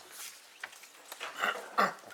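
Sheets of paper rustling and being handled, in short irregular bursts, with two louder short sounds near the end.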